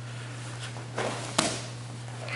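Brazilian jiu-jitsu sparring on foam mats: a brief scuffle of gis and bodies shifting about a second in, then one sharp knock of contact against the mat, over a steady low hum.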